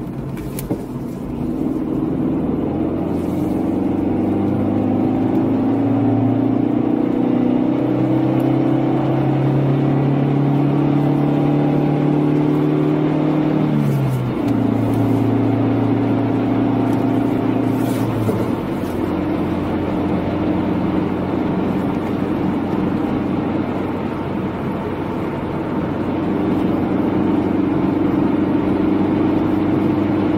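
Car engine heard from inside the cabin, its pitch climbing steadily as the car accelerates, then dropping sharply about halfway through at a gear change and changing again a few seconds later. It then runs steadily with tyre and road noise.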